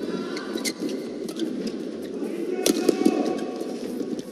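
Badminton rally: rackets strike the shuttlecock several times at uneven intervals with sharp cracks, over the steady noise of an arena crowd.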